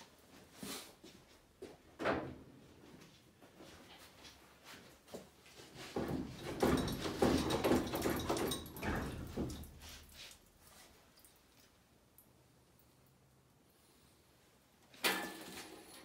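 Metal clanks and knocks as a Land Rover 2.25-litre diesel engine, hanging from an engine hoist chain, is rocked and pulled by hand against the bell housing, with a longer, louder run of clatter about six to ten seconds in. The engine is stuck on the bell housing because one bell-housing nut is still on.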